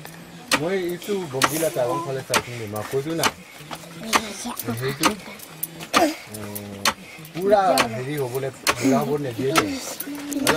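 Wooden pestle pounding maize kernels in a mortar, a sharp knock about once a second, under people talking in a language other than English.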